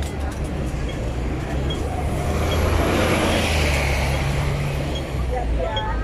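Busy street traffic with a steady low engine rumble, swelling as a vehicle passes close and loudest about three seconds in. A pedestrian-crossing signal ticks slowly and regularly, about once every 0.8 seconds.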